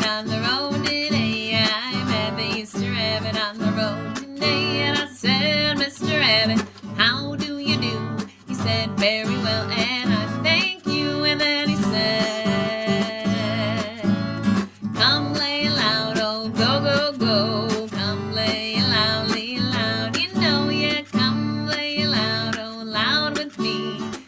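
Acoustic guitar strummed in a steady rhythm, with a woman singing along over it.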